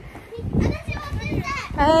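Children's voices calling out and chattering, with a loud high-pitched "Hey" near the end.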